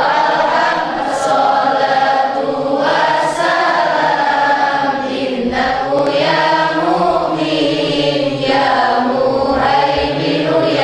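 Several voices singing together in unison, a sung chant of held notes that glide up and down without a break.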